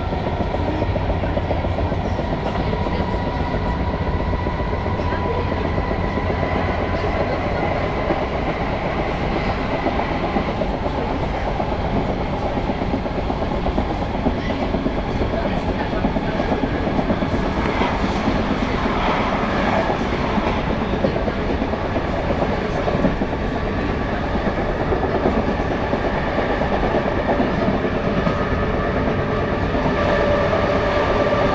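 Passenger train running along the rails, heard from inside the carriage: a steady rumble of wheels and running gear, with a faint steady whine in the first third that fades out.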